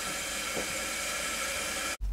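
Steady hiss of water running through a toilet tank's fill valve as the tank refills.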